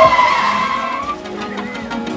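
A car's tyres squealing for about a second as it turns slowly in through a gate, over background music.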